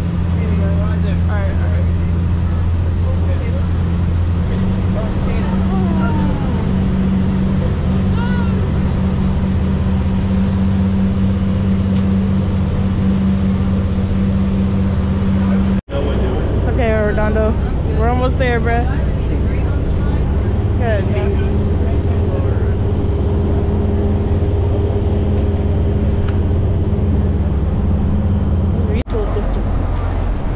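Coast Guard boat's engines running at speed: a loud, steady low drone heard from inside the cabin, with voices faint beneath it.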